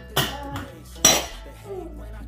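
Steel pot lid and utensils clanking against cookware. There are two sharp metallic clanks about a second apart, the second the loudest, and a fainter clink near the end.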